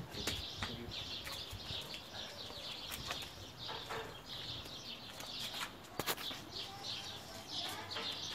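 Small birds chirping continuously in a dense chorus of short, high notes, with a sharp click about six seconds in.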